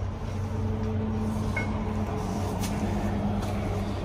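Steady low hum of running shop machinery, even in level throughout, with no strong knock or clank.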